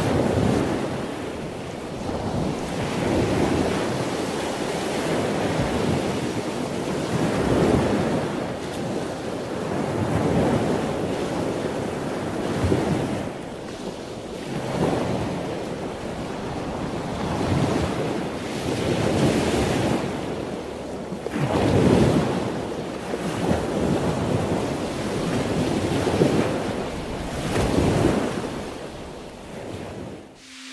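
Ocean surf: waves breaking and washing in repeated surges every three to four seconds, with wind noise over it, the strongest surge about two-thirds of the way through.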